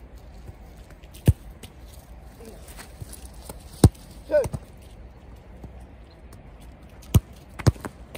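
Football being kicked and caught in a goalkeeper drill: four sharp thuds of the ball being struck and hitting the keeper's gloves, spaced a few seconds apart, the last two close together near the end.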